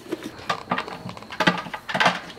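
Wet pumpkin pulp being scooped out of a hollowed pumpkin by hand, with a few short squelches and knocks.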